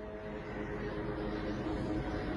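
Low rumbling noise, slowly growing louder, on a phone recording of an air strike's smoke plume over a city, played back on the show.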